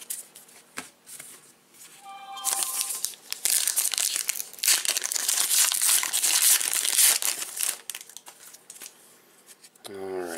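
A baseball card pack wrapper being torn open and crinkled by hand. A loud, papery crinkling sets in a couple of seconds in and runs for about five seconds before tailing off.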